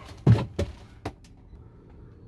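Handling noise from a phone on a handheld gimbal being turned around: a few short knocks and clicks, the loudest about a quarter second in, in a small, close room.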